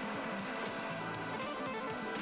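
Live rock band playing, with electric guitar to the fore over a steady, dense band sound.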